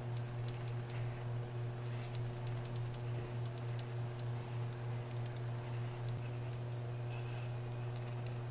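Makeup sponge dabbing cream contour onto the face in soft, quick pats, about three a second, which stop about six seconds in. A steady low hum runs underneath.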